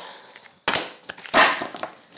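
A deck of oracle cards being shuffled and handled, with two sudden loud rustling snaps, the second louder, about two-thirds of a second and a second and a half in, as a card is drawn and laid down.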